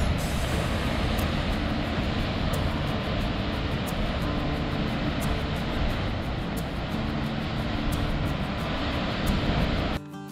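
Steady rushing noise of ocean waves surging and breaking against the base of a sandstone sea cliff, with a low rumble underneath.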